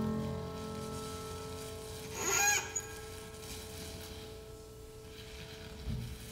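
Experimental chamber music for pianos and percussion: a resonant note with many overtones rings on and slowly fades, with a brief bright metallic shimmer about two seconds in and a soft low thump near the end.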